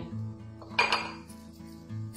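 A sharp metallic clink about a second in as dough is rolled with a wooden rolling pin on a metal plate, with a few faint clicks after it, over steady background music.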